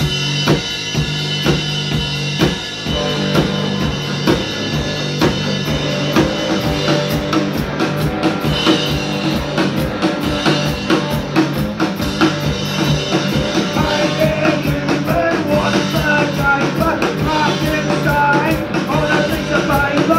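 Live rock band playing a song: drum kit keeping a steady, even beat under sustained bass notes and electric guitar, with a bending melody line coming in more strongly in the second half.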